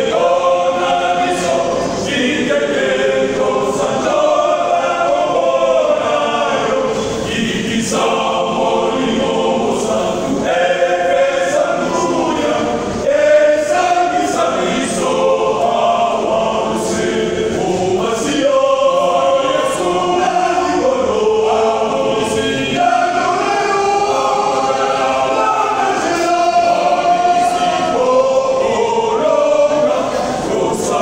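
Men's vocal group singing in harmony.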